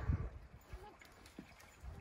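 Goats shifting their hooves on concrete: a few low thumps and knocks, the loudest right at the start, with a brief pitched vocal sound at the same moment.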